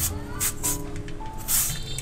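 Background music with steady held notes, over which a plastic julienne shredder scrapes down a peeled green mango, cutting it into thin strands: a couple of short scrapes about half a second in and a longer one near the end.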